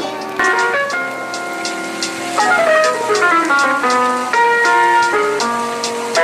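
Background music: a melody of held notes that step up and down in pitch, over faint regular ticks.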